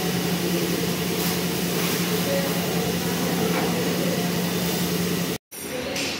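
Pressure washer running steadily: a constant motor hum under the hiss of the water jet as a scooter is washed. It cuts off suddenly about five seconds in.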